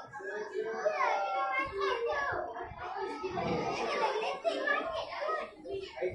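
Many children talking at once: overlapping classroom chatter, with several voices running together and none standing out.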